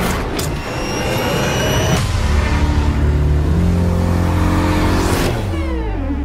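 Car engine revving hard and accelerating, its pitch climbing in steps, then dropping sharply near the end.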